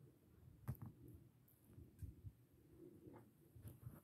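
Near silence, with a few faint soft knocks spread through it.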